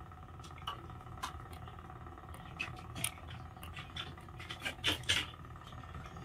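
Ping pong ball tapped against a table tennis paddle in weightlessness, giving about eight light, sharp clicks at irregular intervals, the loudest near the end. A steady hum from the space station cabin runs underneath.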